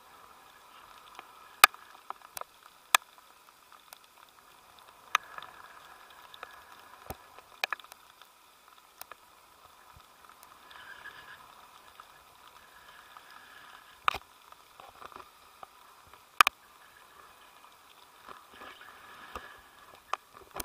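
Faint, muffled rush of wind over the camera during a paragliding flight, with scattered sharp clicks and knocks from the hand-held camera and its mount. About a dozen clicks come at uneven intervals, with the loudest a little past the middle and again near the end.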